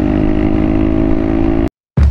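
Honda Grom's 125cc single-cylinder engine running at a steady pitch while cruising, with wind rushing past, cut off suddenly near the end.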